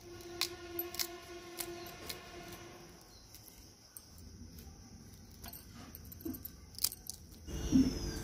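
A steel kitchen knife cutting deep around the stem end of a raw green mango: a few quiet, sharp clicks and scrapes of the blade against the fruit, with a faint ringing tone in the first few seconds.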